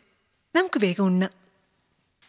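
A cricket chirping in short, high, even trills, about two a second. A brief spoken phrase about half a second in is louder than the chirping.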